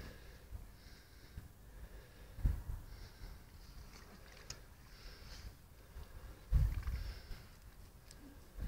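Waders squelching and sucking out of deep, soft mud as a man wades slowly, with two louder low squelches about two and a half seconds in and again about six and a half seconds in.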